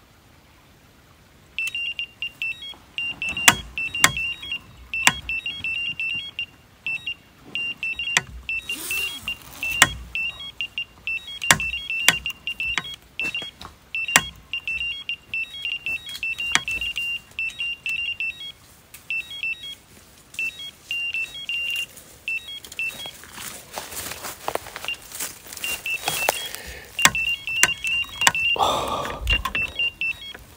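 Electronic carp bite alarm beeping rapidly and almost without pause as line is pulled from the reel: a fish has taken the bait and is running. Sharp clicks are scattered through it, and rustling comes in near the end.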